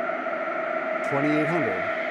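White noise running through the Moog System 55's fixed filter bank, with several bandpass bands turned up to the 2,000 hertz band, giving a steady hiss with a pitched colour. A short voice sound comes over it about a second in.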